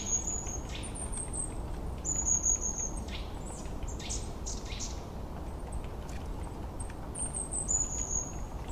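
Outdoor ambience with small birds chirping: short, high calls repeated several times near the start and again near the end, over a steady low background hiss.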